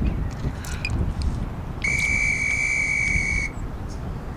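Interval-timer on a phone sounding one long, steady electronic beep of about a second and a half, starting about two seconds in and cutting off sharply: the signal that a tabata work interval begins.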